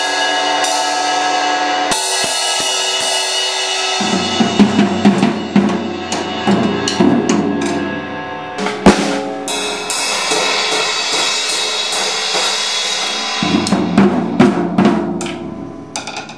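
A toddler bangs on a drum kit with sticks. Zildjian cymbals ring and crash over irregular, unsteady hits on the toms and drums, with no regular beat. One especially loud strike comes about halfway through.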